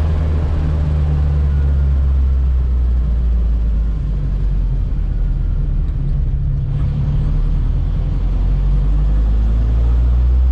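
The rear-mounted Triumph Herald 1147 cc four-cylinder engine of a 1962 Amphicar 770, heard from inside the cabin while the car is driving, running with a steady low drone. The drone eases slightly in the middle and picks up again near the end.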